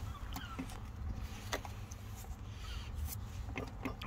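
A few light, scattered clicks and taps as the wiring loom and its plastic connector are handled inside the light bar's aluminium housing, over a low steady rumble.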